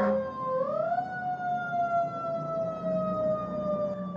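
Fire department vehicle's siren wailing: one long tone that rises in pitch about half a second in, then slowly falls, over a low steady hum.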